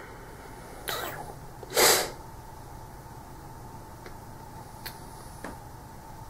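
A person's breath sounds: a softer rush of breath about a second in, then a louder, short, sharp burst of breath just under a second later, followed by a few faint clicks.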